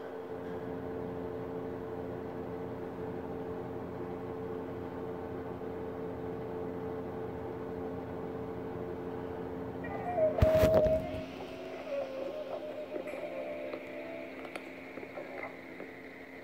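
A steady droning hum for about ten seconds, cut by a single loud knock. After the knock come faint, shifting electronic tones, like music from a small device speaker.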